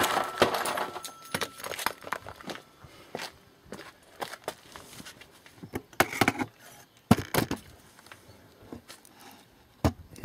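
Irregular metallic clinks, clicks and knocks of cut steel bicycle spokes being worked loose from an electric-bike hub motor, with a few sharper strikes and a brief metallic ring early on.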